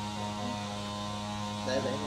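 Steady electrical mains hum, a constant buzzing drone with a stack of overtones, with a faint voice briefly near the end.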